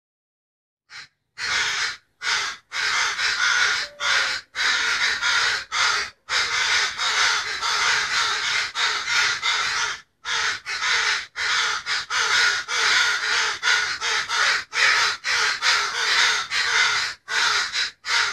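Crows cawing in a rapid, almost unbroken run of harsh calls that starts about a second in.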